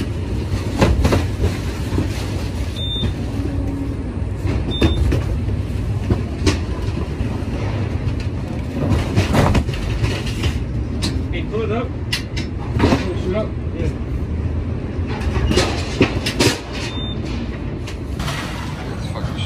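Cardboard parcels being pulled down and tossed while a trailer is unloaded: a string of irregular knocks and thuds over a steady low machine rumble.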